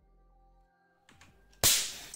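An electric firework igniter set off from a 9 V battery through a relay goes off about a second and a half in: a sudden loud pop with a hiss of sparks that dies away within half a second.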